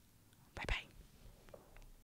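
A woman's short breathy whisper close to the microphone about half a second in, over faint room tone.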